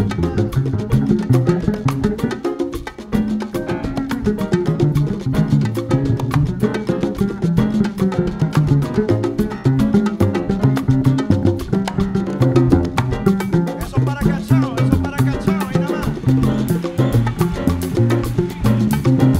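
Afro-Cuban big-band jazz played live by a large jazz orchestra: pitched band lines over dense, driving Latin percussion, with a brief dip in level about three seconds in.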